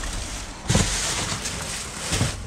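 Plastic trash bags and clear plastic packaging rustling and crinkling as gloved hands rummage through them, louder from a sudden rise a little under a second in.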